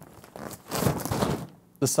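Rustling fabric and light knocks from a large parabolic Nanlite softbox being handled and pulled off a studio light's mount.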